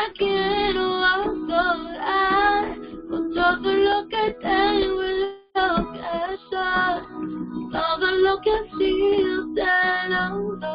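A high voice singing a worship song to guitar accompaniment. The sound drops out for a split second about halfway through.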